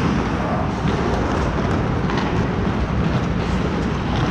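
Steady rushing noise of skating on a hockey rink's ice, picked up by an action camera that moves with a player, with a few faint sharp clicks on top.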